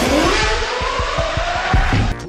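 A car engine sound effect that rises sharply in pitch and then holds, laid over electronic music with a steady beat.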